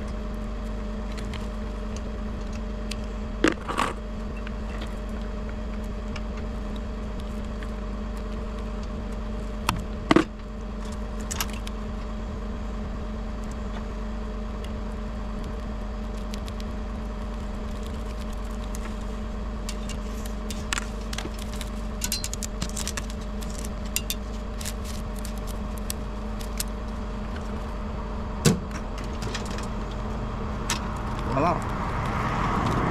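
Bucket truck engine idling steadily with a constant low hum, under a few sharp knocks and light clicks from handwork at an aerial fiber splice enclosure. The loudest knock comes about ten seconds in, and a run of small clicks follows later.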